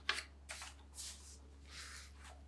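Paper cards and kraft envelopes being slid and handled on a wooden tabletop: four soft papery swishes.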